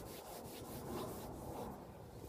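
A faint rubbing rustle over low, steady background noise.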